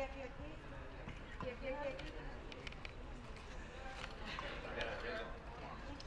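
Faint background chatter of several people talking at once, with no single voice standing out.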